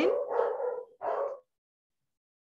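A dog barking, a few barks heard over a video-call connection, the last ending about a second and a half in.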